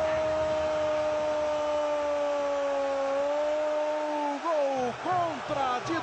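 A Portuguese-language TV football commentator's goal call: 'gol' held as one long, steady shouted note for about four and a half seconds. Short shouted calls that rise and fall in pitch follow near the end.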